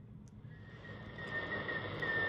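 Marc Pathfinder NR52F1 receiver on the 28 MHz band: static hiss rising as the volume comes up, with a steady high tone coming in about half a second in. The tone is the received signal holding on frequency without drifting.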